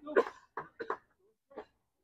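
A man coughing and clearing his throat close to the microphone: a few short coughs, the loudest right at the start, with a fainter one past the middle.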